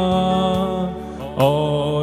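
A man singing a slow devotional worship song into a microphone: he holds one long note that fades away about a second in, then begins a new note about one and a half seconds in, over steady backing music.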